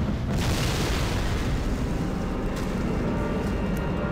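Explosion sound effects from an animated film's soundtrack: a continuous low rumble of blasts and burning, at an even level with no single sharp bang.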